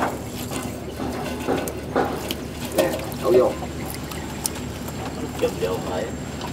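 Water dripping and splashing as live shrimp and gobies are shaken out of a wet net fish trap into a metal basin of water, with scattered sharp splashes.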